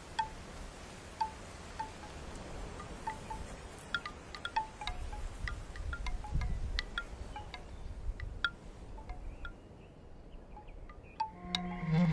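Wind chimes ringing in scattered, irregular strikes while wind blows, the wind swelling about halfway through. Near the end, soft music with held notes starts.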